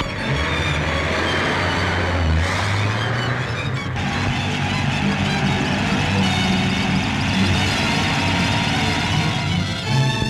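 A car engine running on an old film soundtrack, mixed with background score music. The engine sound shifts about two and a half seconds in and again about a second later.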